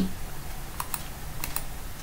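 Three short clicks of computer keys: one just under a second in, then two close together about a second and a half in, over a low steady hum.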